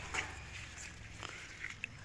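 Faint rustling and a few small clicks of a hand gripping and pulling yellow velvetleaf stems among pond plants.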